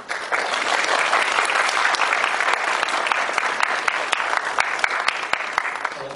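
An audience of many people applauding. The clapping starts just after the beginning, holds steady, and tails off near the end.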